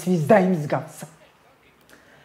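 Speech: one voice talking for about the first second, then quiet room tone.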